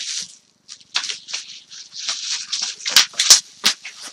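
Plastic bubble wrap rustling and crinkling as a wrapped framed print is pulled out and handled, with a few sharp crackles near the end.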